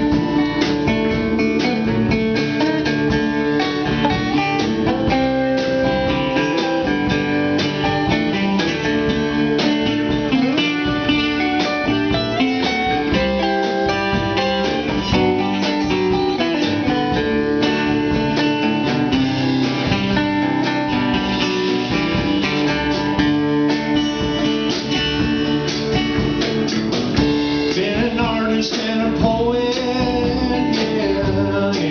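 Live band playing a country-blues song: strummed acoustic guitar, a second guitar, upright bass and drums, with singing at times.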